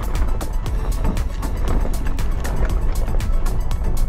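Four-wheel-drive vehicle driving on a gravel mountain road: a steady low engine and tyre rumble with quick rattling ticks, under music with a steady beat.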